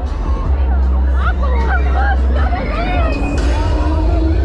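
Loud fairground music with voices and crowd chatter, over a deep steady rumble.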